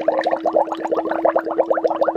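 A woman's voice holding one steady note while bubbling it through water in a glass, a vocal warm-up. The water makes a fast, even bubbling over the held tone.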